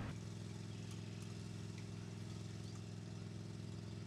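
A vehicle engine idling steadily: a low, even hum with a fast regular pulse.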